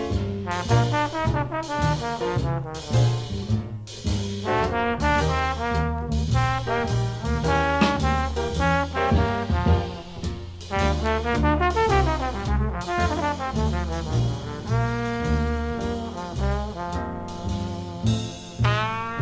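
Live Dixieland jazz band playing a swinging number, with trumpet and brass over a steady bass, played back from a vinyl LP.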